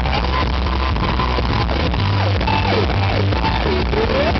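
Live rock band: an electric guitar solo whose pitch swoops down and back up again and again over a steady drum and bass beat. The recording is loud and harsh.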